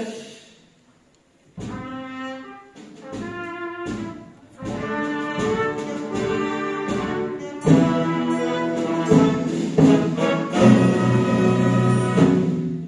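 Trumpet fanfare with orchestral accompaniment, in short phrases that start about a second and a half in and grow fuller and louder toward the end.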